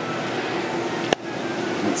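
Steady ventilation fan hum of a grossing workstation, with a single sharp click about halfway through.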